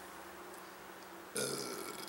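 A short burp about one and a half seconds in, after a quiet stretch of room tone.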